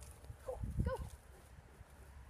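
A dog giving two short high-pitched yips about half a second apart, with low thuds under them.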